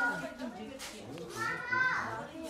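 Several people talking over one another, adults and children, with a high-pitched child's voice near the end.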